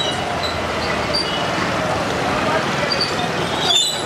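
Busy city street ambience: a steady wash of traffic and crowd noise.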